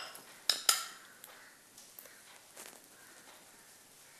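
Two quick clinks of glass bowls knocking together about half a second in. Then faint handling noises as marinated chicken pieces are lifted out of the marinade by hand.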